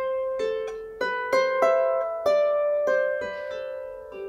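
Lever harp played by hand: a slow melodic phrase of single plucked notes, about one or two a second, each left to ring into the next.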